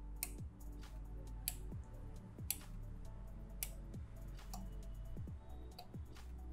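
Relays in a Sonoff 4CH Pro Wi-Fi smart switch clicking as its channels switch the bulbs on and off: a series of separate short clicks, the loudest about two and a half seconds in, over soft background music.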